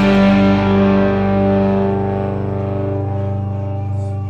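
A punk rock band's last chord ringing out: distorted electric guitars and bass held on one chord, slowly fading. The cymbal wash dies away in the first couple of seconds.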